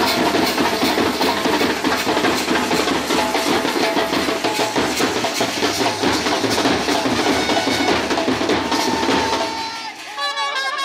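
Procession band music led by a large strapped-on band drum beaten with sticks in a fast, busy rhythm, played within a dense mix of other instruments. The music thins and drops in loudness just before the end.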